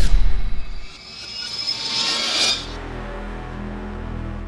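Cinematic logo-sting sound design: a deep boom dies away in the first second, then a rising whoosh builds and cuts off about two and a half seconds in, giving way to a low steady drone.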